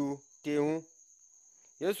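A man narrating in Mbembe in short phrases, with a pause of about a second in the middle. A faint, steady, high-pitched whine runs underneath the whole time.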